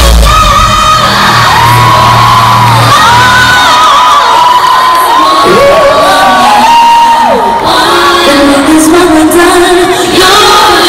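Loud live pop concert music heard from within the arena crowd: a voice holding long sung notes that slide between pitches over the backing music. The deep bass drops out about four seconds in. Fans whoop and cheer over it.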